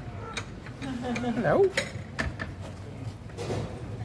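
Scattered sharp clinks and rattles, several over a few seconds, with a short voice-like sound about a second and a half in.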